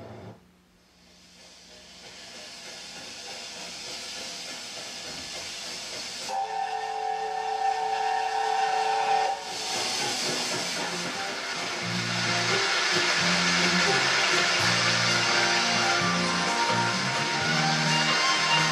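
Steam locomotive letting off steam with a rising hiss, then sounding its steam whistle as one steady chord-like blast of about three seconds, followed by loud, continuous steam hissing.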